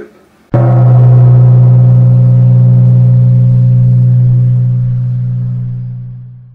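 A dramatic sound-effect stinger: one sudden, loud, low struck tone full of overtones, much like a gong, that rings on and slowly fades away.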